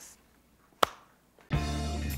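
A single sharp click about a second in, then background music starts abruptly about a second and a half in.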